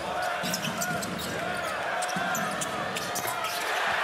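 A basketball being dribbled on a hardwood court, with short high sneaker squeaks, over steady arena crowd noise.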